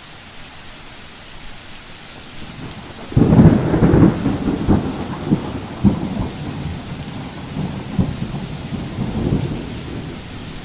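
Recorded thunderstorm sound effect: steady rain, then about three seconds in a loud peal of thunder breaks and rolls on with crackles over the rain.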